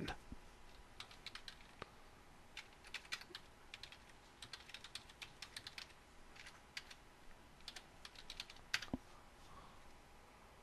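Typing on a computer keyboard: faint key clicks in irregular bursts, with one louder keystroke near the end.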